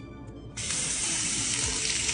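Bathroom sink faucet turned on about half a second in, water running steadily from the tap onto a hand wetting a sponge and into the sink.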